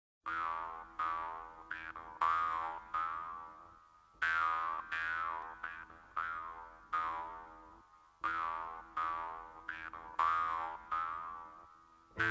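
Solo strummed acoustic guitar opening a folk song. Chords ring out and die away in a pattern that repeats every four seconds.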